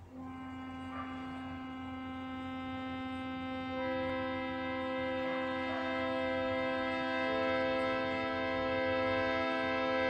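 Harmonium playing long held reedy notes: a single note sounds at the start, a second joins about four seconds in and a third near the end, building a sustained chord that grows slowly louder. A faint low mains hum runs underneath.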